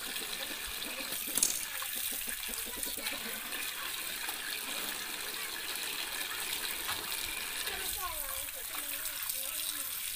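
Water pouring steadily from a pipe spout into a metal basin and splashing as meat is rinsed under it by hand, with one sharp knock about a second and a half in.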